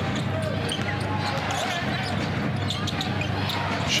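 Basketball arena crowd murmuring steadily, with the ball bouncing on the hardwood court during live play.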